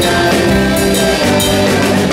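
Live rock band playing: electric guitar and drum kit with a steady beat and a strong low end.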